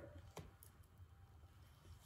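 Near silence: room tone, with a faint click of tarot cards being handled about half a second in.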